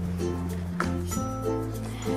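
Background instrumental music with steady bass notes and a few light plucked notes.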